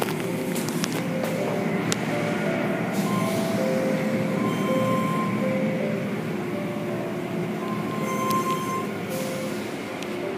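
Automatic tunnel car wash running: steady noise of spraying water and rotating brushes, with short held squealing tones that come and go and a few sharp clicks.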